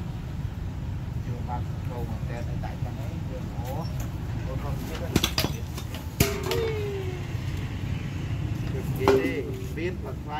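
Indistinct voices in the background over a steady low rumble, with two sharp clicks about five and six seconds in.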